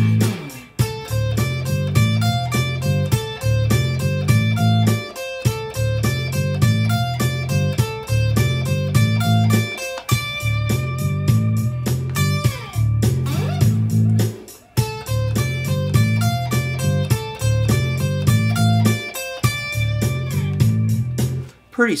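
Electric guitar playing a repeating D blues scale drill high on the first and second strings (frets 10 and 13: C, D and F) along with a steady drum machine beat.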